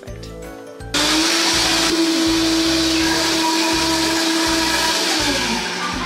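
A small electric motor switches on about a second in, runs steadily with a loud whirring hum, and winds down with a falling pitch near the end. Background music with a steady beat plays underneath.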